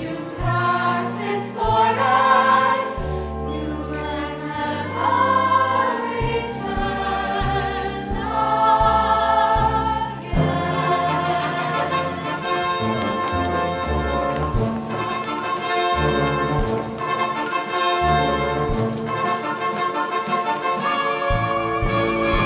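A mixed high-school choir singing a holiday song in harmony over instrumental accompaniment with a bass line. About ten seconds in, the music changes to fuller, held chords.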